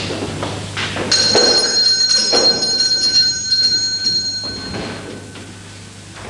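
A high bell rings about a second in, its clear ringing tone lingering for about three seconds before fading, with light knocks of movement on the stage floor.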